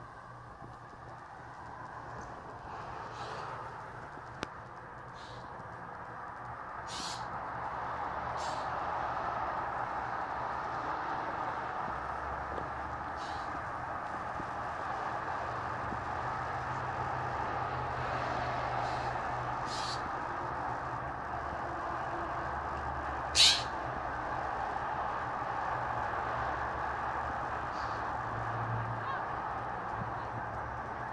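Blue jay giving short scolding calls every few seconds, about eight in all, one much louder than the rest a little past two-thirds through, over a steady background hiss. The jay is mobbing a cat to drive it from near its nest, as the uploader believes.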